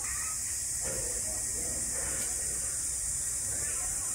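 Faint distant voices, about a second in and running until near the end, over a steady high hiss and a low rumble of background noise.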